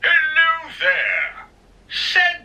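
Two short, high-pitched, wordless voice sounds in quick succession, then a pause.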